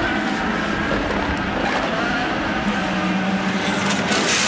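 Engine of an IndyCar, a Honda V8, running at low revs as the car pulls into its pit box and stops, over a steady drone of race cars.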